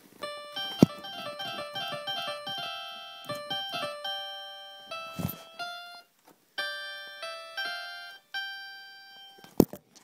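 An electronic keyboard set to its electric piano voice plays a string of single notes and short runs, pausing briefly about six seconds in before more notes follow. A sharp knock comes about a second in and another near the end.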